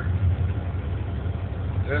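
Semi truck's diesel engine idling, a steady low hum heard inside the cab.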